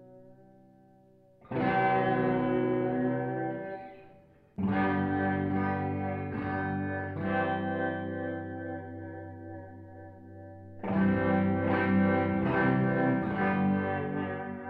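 Music: guitar chords, each struck and left to ring and slowly fade, three times: about one and a half seconds in, about four and a half seconds in, and near eleven seconds.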